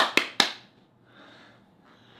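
Three quick hand claps about a fifth of a second apart, all in the first half second.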